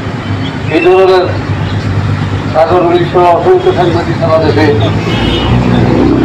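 A man speaking into a microphone, with road traffic running underneath and a low vehicle rumble swelling near the end.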